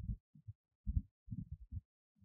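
A run of faint, muffled low thumps at an irregular pace, about three a second.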